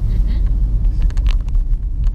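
Steady low rumble of engine and road noise heard inside a moving car's cabin.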